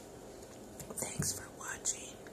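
A woman whispering a few words, in two short hissy bursts about a second in and just before the end.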